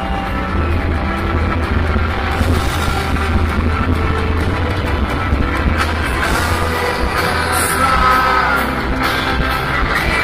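A rock band playing live through a hall PA, heard from within the crowd: electric guitar, heavy bass and drums at a steady loud level, with a sung vocal line in the second half.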